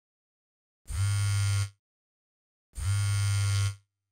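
Mobile phone vibrating on a hard surface: two steady buzzes, each just under a second long, about a second apart.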